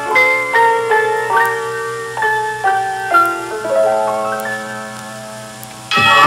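Instrumental passage of a 1960s Japanese pop song: a melody of single struck, ringing notes on a keyboard or mallet instrument, slowing and fading toward the end. The full arrangement comes in loudly right at the end.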